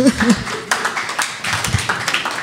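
Audience clapping after a punchline: many scattered individual claps, with a brief voice at the very start.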